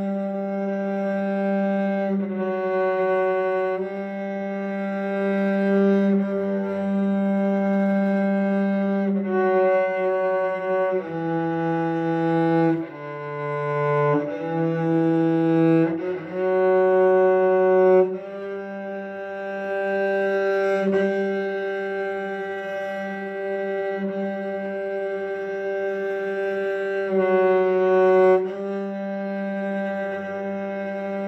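Cello played with slow, long bow strokes, mostly the same held note sounded over and over with a change of bow every second or two. A few lower notes come briefly in the middle before the repeated note returns.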